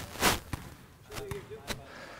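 A few basketballs bouncing on a sports-hall floor, each a sharp knock, with a short rushing noise near the start and faint voices in the hall.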